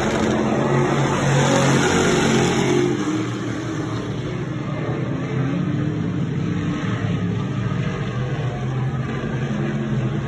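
Several Sportsman dirt modified race cars running at racing speed around a dirt oval, their engines a mixed, wavering drone that drops a little about three seconds in as the pack moves down the far straight.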